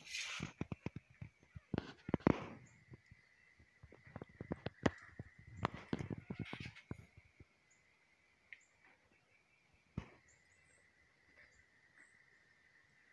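Irregular light clicks and knocks for the first seven seconds or so, then quieter, with one sharp click near ten seconds. A faint steady high whine runs underneath, and a few faint high chirps come in the second half.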